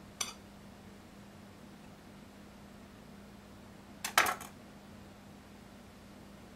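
A knife clinking against a plate and serving board while cake slices are cut and served: one light click just after the start, then a louder cluster of clinks about four seconds in. A faint steady hum runs underneath.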